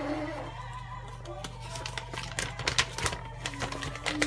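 Paper product flyer being unfolded and handled: a run of short crinkles and rustles, with faint music underneath.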